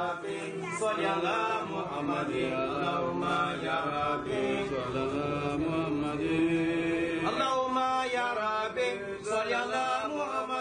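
A group of men's voices chanting together in a devotional chant, held without a break, with the melody shifting about seven seconds in.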